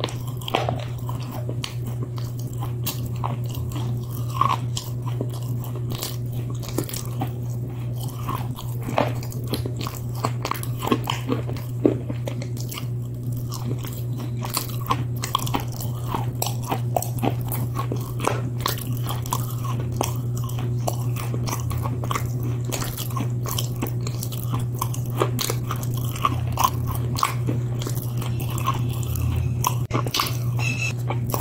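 Close-miked crunching and chewing as someone bites into brittle flat white sticks: a constant run of sharp crunches, over a steady low hum.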